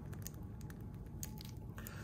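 Faint, scattered small clicks and rubbing of hard plastic as a Marvel Legends Wolverine action figure's head is worked at its neck ball joint by hand during a head swap.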